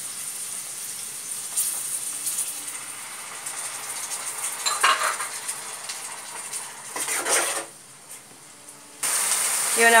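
Peas and masala frying in oil in a kadai, a steady sizzle, with a metal spatula scraping and stirring against the pan a few times. The sizzle drops away for about a second near the end, then comes back louder.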